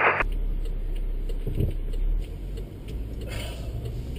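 A car driving, with a steady low road-and-engine rumble.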